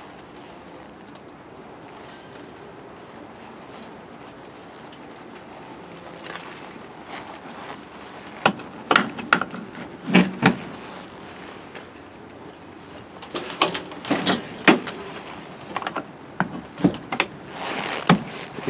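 Metal gladhand couplers on a semi truck's air lines clacking and clicking as they are fitted and twisted to lock onto the trailer's couplings. The first half is quiet; from about halfway in come several clusters of short knocks.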